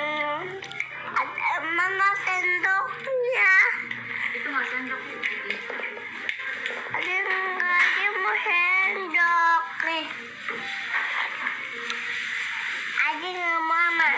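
A young child's high-pitched voice, talking on and off, over quieter background music.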